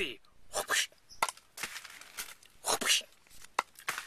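A man's voice in short, breathy, indistinct bursts with pauses between them: quiet half-spoken sounds rather than clear words.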